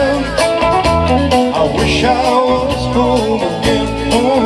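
Live blues-rock band playing loudly: a three-piece of double-neck electric guitar, electric bass and drum kit, with a wavering lead melody over a pulsing bass line and a steady drum beat.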